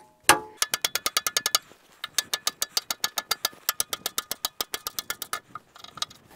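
Ratchet wrench clicking rapidly against steel, about ten clicks a second, in two runs with a short pause about two seconds in.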